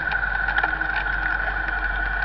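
Car running slowly, its engine and road noise heard from inside the cabin through a dashcam microphone: a steady hum with a constant high whine and a few light clicks.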